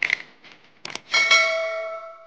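A few light clicks, then a single clear bell-like ring about a second in that fades away over about a second and a half.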